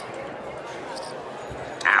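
Steady casino-floor background noise with no distinct clicks standing out. Just before the end a man's voice comes in with a loud exclamation.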